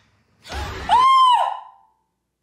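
A short, loud, high-pitched scream by a woman, arching up and then sliding down. It comes right after a brief burst of rumbling noise about half a second in.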